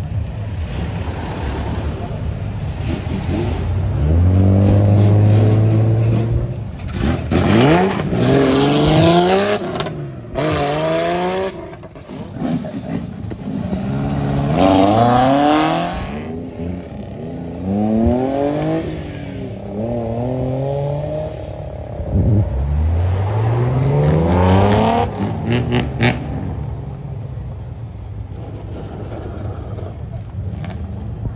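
Engines of modified old Japanese kaido-racer cars revving, one car after another. There is a steady loud low note about four seconds in, then a series of rising revs every few seconds, easing off near the end.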